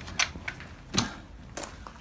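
A few short metallic clicks and knocks of hand-handled motorcycle parts and tools, the loudest about a second in.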